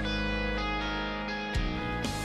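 Background score music of held guitar chords, with a new chord struck about one and a half seconds in.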